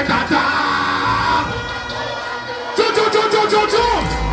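Live dancehall music played loud through a PA system, with a deejay's amplified vocal over the beat and a crowd yelling. The music thins out about halfway through, then the vocal and bass come back strongly near the end.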